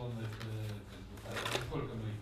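Papers rustling briefly on a table about one and a half seconds in, over a steady low hum and a man's hesitant voice.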